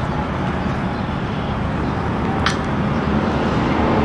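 Steady rushing noise of highway traffic heard outdoors, with one brief high chirp about two and a half seconds in.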